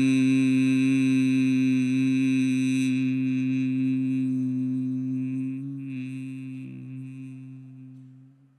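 A man humming one long, steady low note into a microphone, like a bee, on a slow out-breath: bhramari (bee breath) pranayama. The hum fades gradually, wavers briefly about six seconds in, and dies away at the very end.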